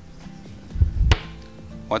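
A dull low thump ending in a sharp click about a second in, over soft background music with steady held notes.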